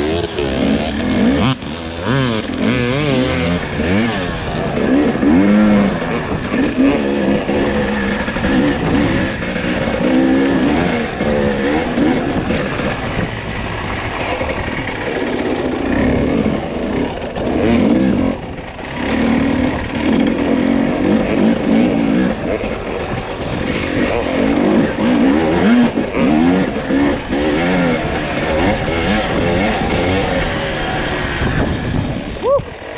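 Dirt bike engine heard from on the bike, revs rising and falling constantly as the throttle is worked over rough trail, with a short easing-off about two-thirds of the way through.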